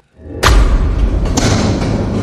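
A heavy thud onto a hard floor about half a second in, followed by a sustained low rumble with a second, smaller hit near the middle.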